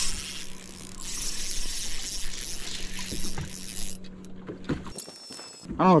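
Bow-mounted electric trolling motor of a bass boat running with a steady low hum, under a high hiss of wind and water. The hum drops out briefly about five seconds in, and there are a few light clicks from the boat.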